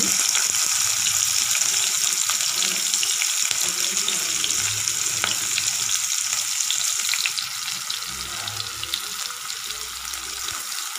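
Diced red onion sizzling in hot oil in a frying pan with green chillies, with small crackles throughout. The sizzle grows a little quieter about seven seconds in.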